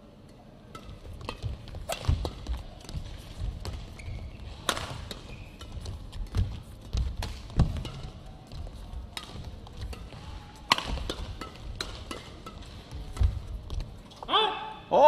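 Badminton doubles rally on an indoor court: sharp racket strikes on the shuttlecock at irregular intervals, the loudest about five and eleven seconds in, over the thud of players' footwork on the court.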